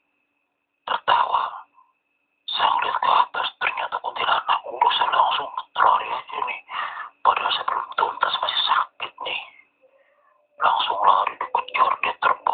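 A man's voice with a narrow, radio-like sound, in runs of a few seconds with short pauses between them; the words are not made out. A faint steady high tone runs underneath.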